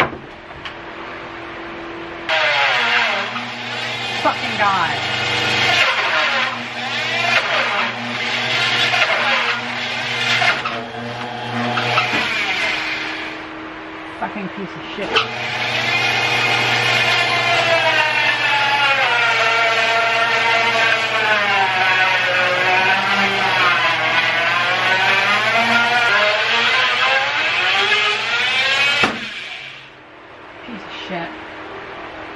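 Bandsaw running with its motor humming, then the blade ripping through a log on a sled: a wavering whine that rises and falls with the feed pressure, starting about two seconds in. The cut eases off briefly around the middle, then runs on steadily until it stops shortly before the end.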